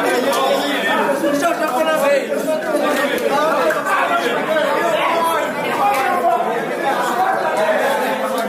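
Several men talking over one another in lively group chatter, with no single voice standing out.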